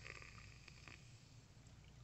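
Faint fizzing of Mountain Dew Baja Blast soda poured onto gelato in a glass mug as it foams up, dying away after about a second into near silence.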